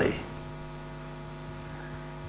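Steady low electrical hum, like mains hum, made of several unchanging pitches.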